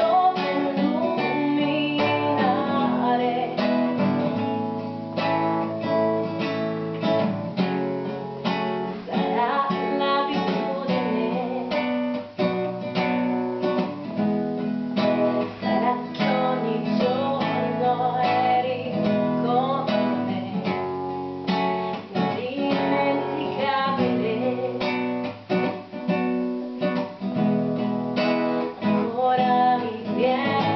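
A woman singing, accompanied by a classical guitar strummed in a steady rhythm.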